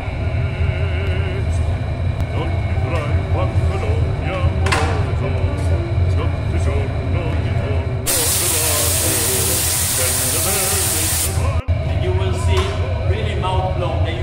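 Steady low roar of a glassblowing furnace with murmuring voices, broken about eight seconds in by a loud hiss that lasts about three and a half seconds and stops abruptly.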